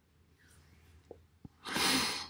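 Near silence with two faint clicks, then near the end a short, loud breathy exhale or snort from a person.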